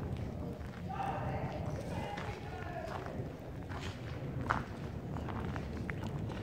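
Footsteps crunching on a gravel and debris floor, with scattered short clicks and one sharper crack about four and a half seconds in, over a steady low rumble. A faint voice is heard between about one and two and a half seconds in.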